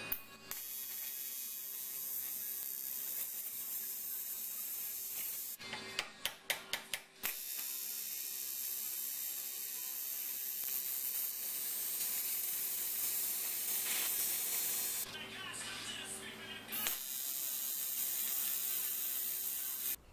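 TIG welding arc hissing steadily as a fitting is welded onto an aluminium valve cover. The hiss is broken twice by a run of short, sharp pulses.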